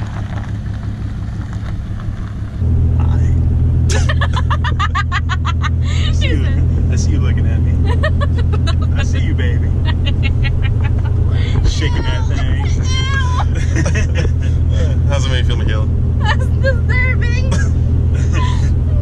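Steady low drone of a straight-piped 6.7 Cummins diesel heard inside the cab of a 2017 Ram 2500 while cruising, louder after a cut about two and a half seconds in. People laugh over it for most of the rest.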